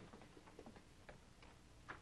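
Near silence broken by a few faint, irregular clicks: three close together around the middle, and a slightly louder one near the end.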